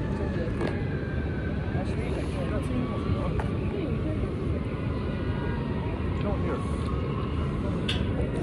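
Steady wind on the microphone, with indistinct chatter of people nearby.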